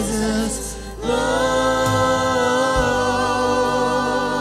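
A worship team of several singers with a band singing a contemporary worship song: a held note with vibrato, a short break about a second in, then one long sustained note over a steady low accompaniment.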